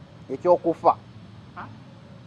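A man's voice making three quick, short vocal sounds that rise in pitch about half a second in, then a faint fourth one, with no words.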